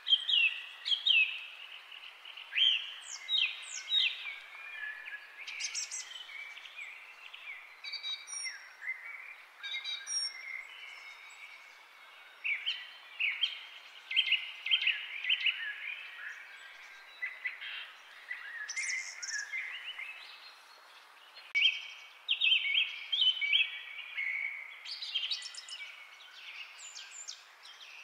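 Several birds chirping and singing in short, overlapping whistled phrases over a faint steady hiss, going on throughout.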